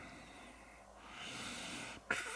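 A faint, soft breath near the microphone: a quiet hiss that swells over the second half, over low room tone.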